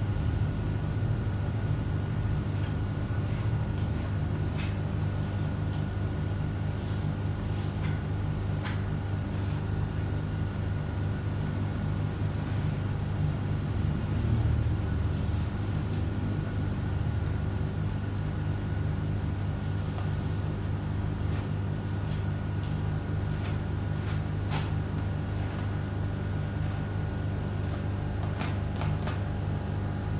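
Steady low mechanical hum, like a fan or other running appliance in a small room, with a few faint clicks and taps scattered through it.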